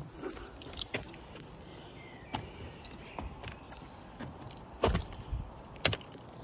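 Handling and movement noises: scattered light clinks and knocks, with louder thumps about five seconds in and again just before the end.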